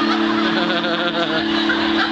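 A steady, low two-note tone from the stage's amplified instruments starts suddenly and holds level for about two seconds, with voices in the room over it.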